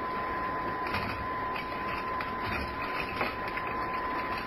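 Faint clicks, knocks and rustling of a drawer being searched for a pack of cards, a radio-drama sound effect, under the steady hiss and high-pitched whine of an old broadcast recording.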